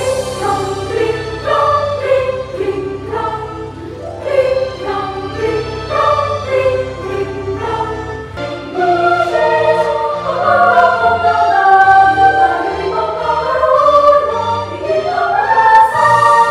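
Children's choir singing in several voice parts, with a low sustained accompaniment underneath; the singing grows louder about halfway through.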